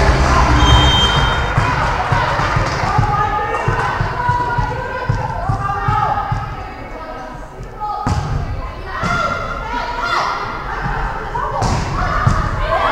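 Volleyball players' voices echoing around a large sports hall, with the sharp smack of the ball being struck about eight seconds in and again near the end as play starts.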